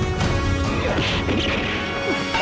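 Film fight sound effects: a kick landing with a crashing hit, over steady dramatic background music.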